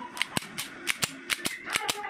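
Slide of a Beretta M92FS airsoft pistol being racked back and forward by hand: a quick run of sharp clicks, often in close pairs, about four pairs in two seconds.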